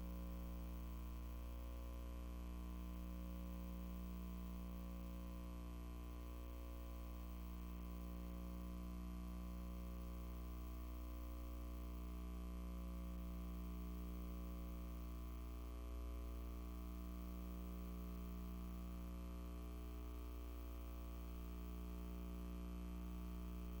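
Steady electrical mains hum with a stack of buzzing overtones, slowly wavering in strength and with nothing else over it.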